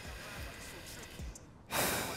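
Quiet background with faint breathing from a grieving man, then a sudden loud rush of sound near the end as a rap track comes in.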